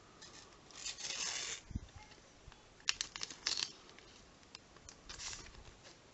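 A Panini sticker packet's wrapper being torn open by hand: a rough ripping sound about a second in, then a quick run of sharp crinkling clicks around three seconds in, and a softer rustle near the end.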